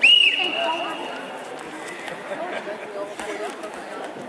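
Referee's whistle: one long, clear blast of about a second and a half, starting the wrestling bout. Hall chatter continues underneath.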